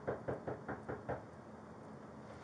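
Knocking on a house's front door: a quick, even run of knocks, about five a second, that stops a little after a second in.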